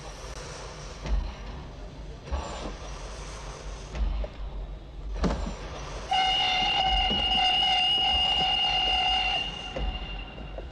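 Steam train pulling out, with bursts of hiss and a sharp metal clank about five seconds in, then the locomotive's whistle blows one steady, loud chord for about three and a half seconds.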